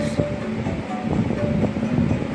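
Children's music playing from a TV, faint short notes over a low rumbling noise.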